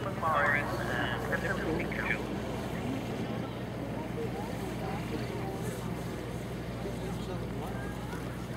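A steady, low engine hum runs throughout, with indistinct voices in the first two seconds.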